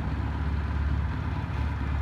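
Honda CM125 Custom motorcycle engine idling steadily.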